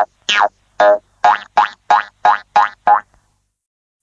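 A cartoon 'boing' sound effect for a bouncing ball, repeated about nine times. Each is a short twang that falls in pitch, and they come a little closer together toward the end.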